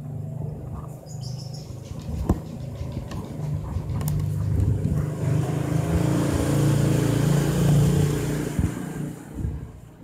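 A vehicle engine running, growing louder from about three seconds in to a peak near eight seconds, then fading near the end, as a passing vehicle does. A few sharp knocks sound over it.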